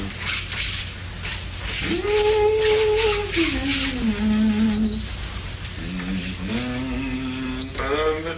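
A man's voice holding long wordless notes: a sustained note that slides down in steps midway, then a lower held note near the end. Rhythmic scratchy strokes run through the first half.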